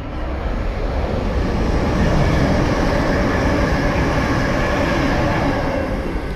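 A train running past on the main line: a loud, steady rumble and rush that builds over the first two seconds and eases a little near the end.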